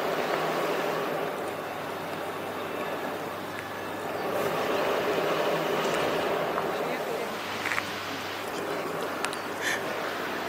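A car's engine and tyres as it is driven hard through a cone slalom, the sound swelling and fading as it accelerates and turns, loudest at the start and again in the middle.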